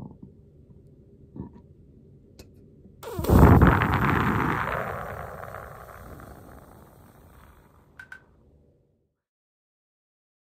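A woman's burps: a couple of short low burps near the start and about a second and a half in, then at about 3 s a loud burp pushed out through puffed cheeks and pursed lips at the microphone, trailing off over about five seconds as a breathy rush of air.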